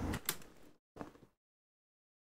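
A sharp click and a fading rustle, then a second brief click-like noise about a second in, after which the sound cuts to dead silence.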